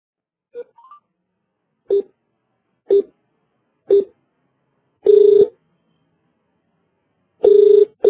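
Telephone line tones as a call is placed: three short beeps about a second apart, then longer tones on the same low steady pitch. The last two longer tones come as a quick pair, the ringback signal that the called phone is ringing.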